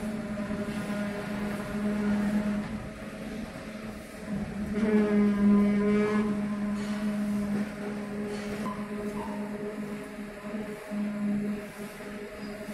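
Construction-site machinery running with a steady low hum, a little louder and more strained for a second or two about five seconds in.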